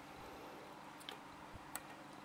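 Near quiet, with a few faint light ticks as thread is drawn through the guides of a Juki TL-2010Q sewing machine during hand threading.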